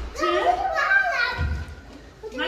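A child's high-pitched voice talking or calling, with no clear words, and a low thud about one and a half seconds in.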